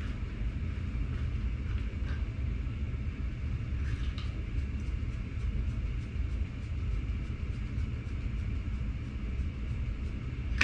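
Steady low rumble, with faint clicks about two and four seconds in from a trigger spray bottle being pumped; its nozzle is clogged by the ceramic coating it holds.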